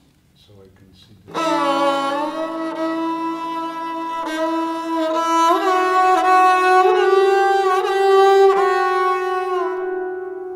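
Sarangi bowed with its traditional horsehair bow: about a second in, a sustained melodic line begins, long held notes joined by sliding changes of pitch, fading away near the end.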